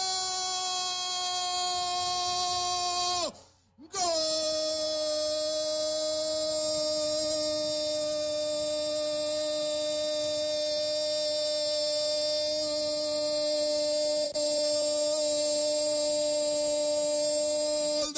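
A radio football commentator's long drawn-out goal cry for a converted penalty kick. It is one vowel held at a high, steady pitch, broken by a quick breath about three and a half seconds in, then held again a little lower for about fourteen seconds.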